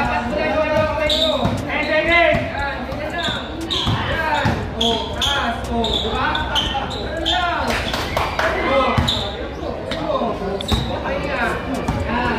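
A basketball bouncing and knocking on a hard court during play, under steady talking and calls from spectators in a large hall.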